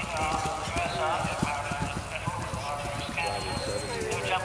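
Hoofbeats of a galloping event horse on grass as it takes a cross-country fence, a quick run of low knocks, with people talking nearby.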